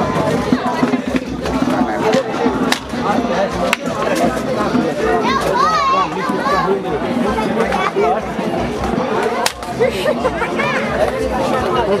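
Several people talking and calling out over one another, a steady babble of voices, with a few sharp knocks scattered through it.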